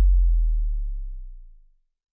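The tail of a deep synthesized bass boom from the end-card music, dying away slowly and sliding slightly down in pitch until it fades out near the end.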